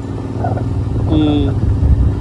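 Royal Enfield Interceptor 650's parallel-twin engine running under way as the motorcycle rides, a steady low rumble that grows louder near the end.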